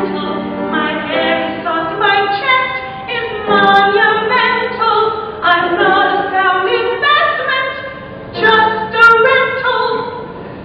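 A woman singing a musical-theatre solo in long sung phrases with short breaks between them, swelling loudest near the end.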